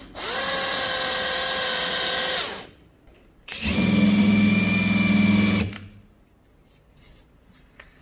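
Power drill boring a pilot hole into a wooden board with a twist bit, the motor spinning up and running steadily for about two and a half seconds. After a short pause it runs again with a countersink bit cutting the top of the hole, this second run louder and lower.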